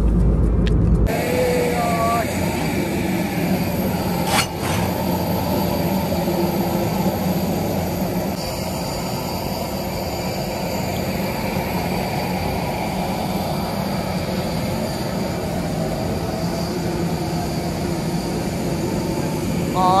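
Brief low drone of an airliner cabin, then a steady, loud din of aircraft and ground machinery on an airport apron, with one sharp knock about four seconds in.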